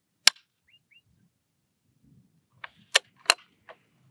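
Bolt-action rifle dry-fired: one sharp click as the trigger breaks on an empty chamber, then a few quicker metallic clicks about two and a half seconds later as the bolt is worked.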